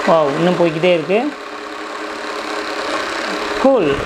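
Small electric motor of a toy ATM money bank drawing a paper banknote into its slot, running steadily and stopping abruptly near the end, with a short voice over the first second.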